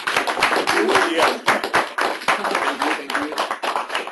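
Audience applauding: many people clapping at once in a dense run of claps, with a few voices mixed in underneath.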